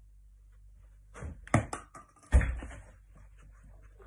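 Knocks and thuds of a thrown object hitting a wooden floor and knocking over a standing toilet roll: a quick run of knocks about a second in, then the loudest thud a little after two seconds, with bouncing after it.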